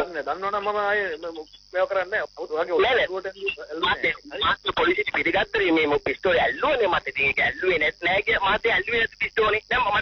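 Continuous talk from a Sinhala radio talk show, with a faint steady high hiss above the voices.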